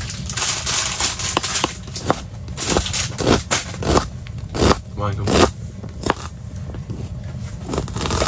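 Kitchen knife chopping red onion on a plastic chopping board: a run of short, irregular taps as the blade strikes the board.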